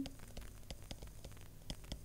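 Stylus writing on a tablet screen: a scattering of faint ticks and light scratches over a low hiss.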